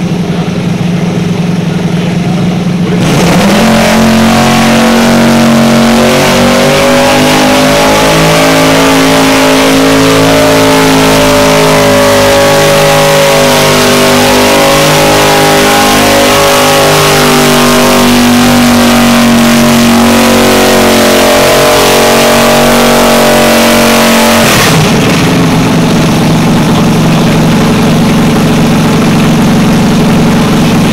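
Garden pulling tractor engine revving up to full throttle about three seconds in and held there, wavering a little under load, for some twenty seconds while it drags a weight-transfer sled. It then drops back to idle near the end.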